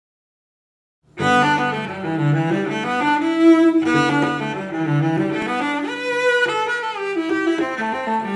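After about a second of silence, a solo bowed string instrument starts playing an etude passage at audition tempo, a quick run of notes in the low-middle register.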